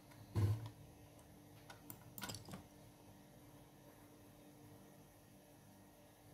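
Small objects handled on a desk: a soft thump about half a second in, then a short run of light clicks and taps about two seconds in, over a faint steady hum.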